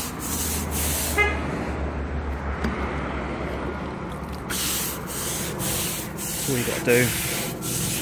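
Stiff-bristled broom brushing wet bleach solution back and forth over natural stone paving, about two or three strokes a second, easing off for a few seconds in the middle before the strokes pick up again.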